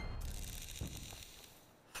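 Online slot game's sound effect as the reels start a new spin: a hiss that fades away over about a second and a half.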